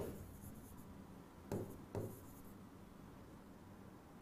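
Faint stylus writing on an interactive display screen, with two short light taps about a second and a half and two seconds in.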